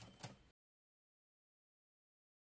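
Silence: the audio track drops out completely about half a second in, after a few faint clicks.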